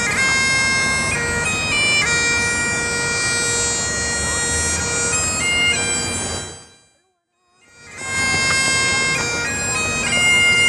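Highland bagpipe playing a tune over its steady drone. About two-thirds of the way through the sound fades out to a moment of silence, then fades back in with the pipes still playing.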